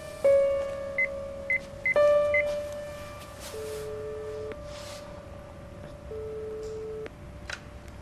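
Sparse piano notes of the film score. Four short high phone keypad beeps sound about one to two and a half seconds in, then a phone's ringing tone plays twice, each about a second long.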